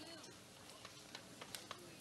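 Near silence: faint background noise on the broadcast feed, with a few soft ticks in the middle.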